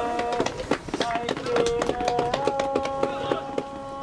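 A song: a singer holds long notes that slide from one pitch to the next over the backing, with many sharp percussive clicks scattered through it.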